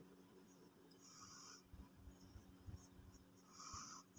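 Faint scratchy strokes of a paint-laden brush dragged across paper, with two longer strokes about a second in and near the end.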